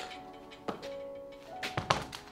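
PVC pipes knocking as they are handled and stood on end: one light tap just before a second in and a few sharp knocks close together near the end. Background music with held notes runs underneath.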